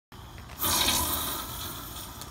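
Boring Company "Not a Flamethrower" propane torch firing a burst of flame: a loud rushing whoosh that starts suddenly about half a second in and fades off over the next second.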